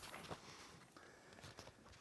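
Near silence: room tone, with a few faint short clicks.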